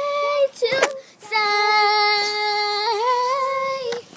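A girl singing a wordless vowel close to the microphone: a short note, then one long held note at a steady pitch from about a second in, with a small wobble near the end.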